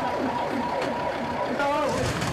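Ambulance siren holding a steady tone, cutting off about one and a half seconds in, over a crowd of people shouting.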